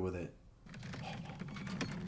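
Rapid, irregular clicking and rattling over a low hum, like a wheelchair's wheels being pushed along, starting about half a second in.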